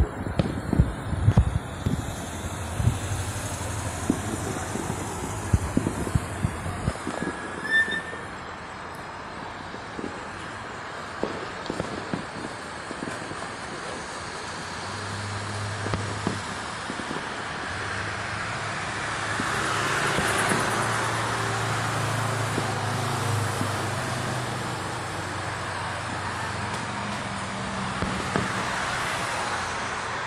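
Fireworks going off as a quick run of sharp bangs and cracks over the first several seconds. After that comes the steady hum of street traffic, swelling as cars pass about two-thirds of the way in and again near the end.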